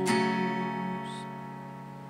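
Acoustic guitar's closing chord strummed once and left ringing, fading slowly away as the song ends.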